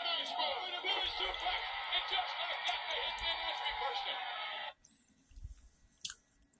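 Television audio, voices over music, playing and then cutting off suddenly near the end when it is muted with a remote; a faint click follows.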